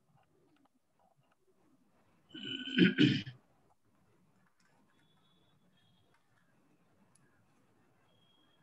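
A person clears their throat once, a short two-part burst about three seconds in; the rest is near silence.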